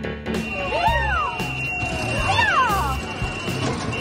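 Background music with a steady low beat, over street sound: a steady high-pitched alarm tone and two rising-and-falling wailing human cries, about a second in and again just past two seconds.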